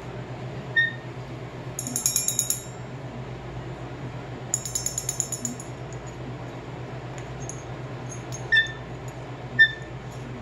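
A cockatoo tapping a small metal handbell held in its beak: the bell gives short single rings about a second in and twice near the end, and two quick runs of light metallic tapping around two and five seconds in.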